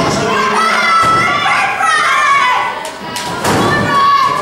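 Thuds of wrestlers' bodies and feet hitting the ring canvas: one right at the start and a heavier one about three and a half seconds in, with voices shouting from the crowd between them.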